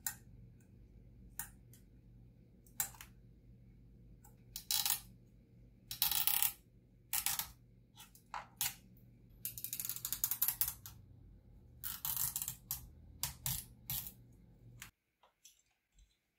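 Hands handling small plastic laptop parts, the ThinkPad's cooling fan with its cable and tape: irregular clicks and taps with short scraping rustles, over a faint steady hum that cuts off near the end.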